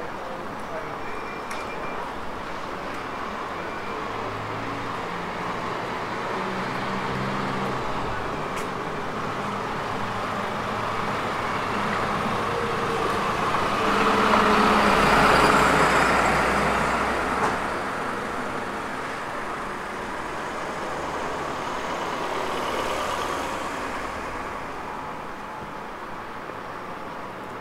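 Street traffic noise with vehicle engines running, swelling to its loudest about halfway through as a delivery van's engine, running at the kerb close by, is passed, then fading again.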